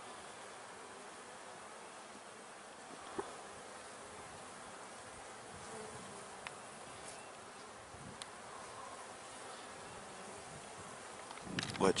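Honey bees in an opened hive box, buzzing steadily among the frames, with a few brief faint clicks.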